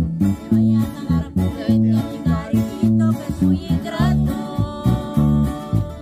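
Acoustic guitars strumming over an electric bass guitar in a steady, bouncy rhythm, the bass notes falling about twice a second.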